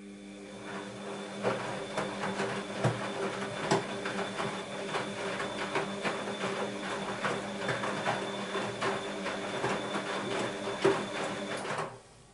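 Bosch WAB28220 washing machine tumbling its wet laundry: a steady drum-motor hum with water sloshing and clothes knocking and thudding irregularly as the drum turns. It stops suddenly near the end.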